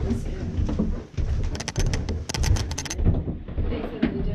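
Footsteps and handling noise going down a narrow staircase, with a quick rattle of sharp high clicks for about a second and a half in the middle.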